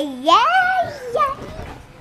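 A young child's voice close to the microphone: a drawn-out vocal sound that rises in pitch, holds, then fades away near the end.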